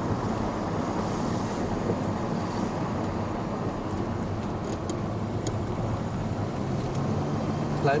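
Steady engine and tyre noise heard from inside a vehicle driving on a wet road, with a low engine hum coming up near the end.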